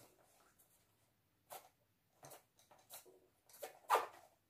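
Faint, scattered clicks and rattles of wooden coloured pencils being handled and knocked together while one pencil is picked out of the set, the loudest just before the end.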